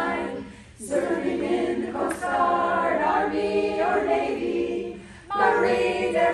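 Women's choir singing a cappella, in phrases with two short breaks: one about a second in and one near the end.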